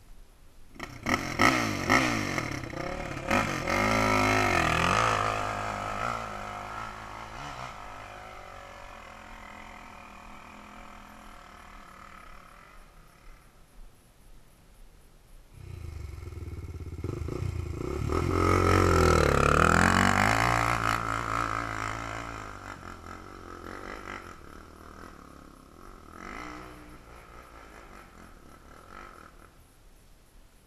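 Dirt bike engine revving up and easing off in two loud surges, one starting about a second in and another from about sixteen seconds, running quieter in between.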